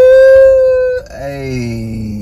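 A man's loud, high-pitched excited "ooh" in a held, howl-like note for about a second. After a short break comes a lower, drawn-out vocal sound.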